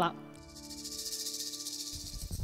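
Quiet suspense music: a few held, sustained tones under a high, hissing, shaker-like rattle.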